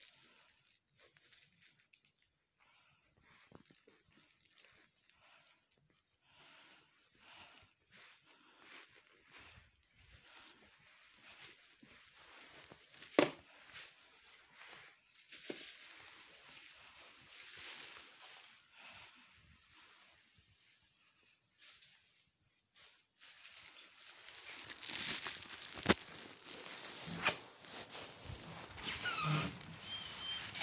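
Quiet rustling and handling noise from a handheld phone being carried while walking, with a single sharp click about thirteen seconds in. From about twenty-four seconds a steadier hiss comes in, with more clicks.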